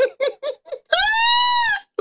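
A man laughing: a quick run of about five short chuckles, then one long high-pitched falsetto note of laughter, gently rising and falling in pitch.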